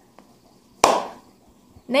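A single sharp hand clap a little under a second in, fading quickly.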